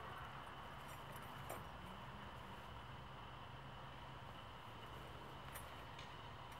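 Faint outdoor ambience: a steady low hiss with a few soft ticks, one a little louder about one and a half seconds in.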